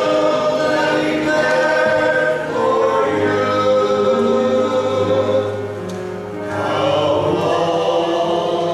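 Small men's choir singing a slow gospel song, several voices holding long sustained notes together, with a brief drop at a phrase break about six seconds in.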